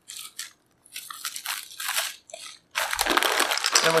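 Plastic bags and paper packaging rustling and crinkling as parts are handled and lifted out of a cardboard box: short scattered rustles at first, then a denser, louder rustle near the end.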